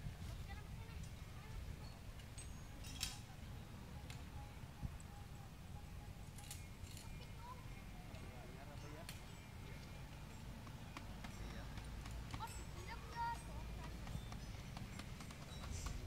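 Faint voices over a steady low rumble, with scattered short clicks and knocks.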